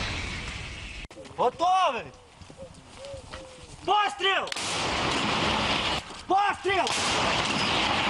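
Towed artillery howitzer firing: loud blasts that roll on for several seconds, with short shouted voices between the shots.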